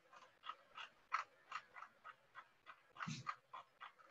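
Computer mouse scroll wheel clicking as a document is scrolled: a string of small ticks, roughly three a second, with a louder cluster about three seconds in.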